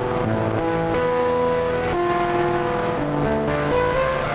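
A keyboard melody played through the iZotope Trash Lite distortion plugin on its 'Unpredictable' preset. The notes change about every half second to a second and sit inside a dense, gritty haze of distortion.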